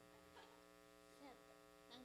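Near silence, with a steady electrical mains hum from the stage amplification.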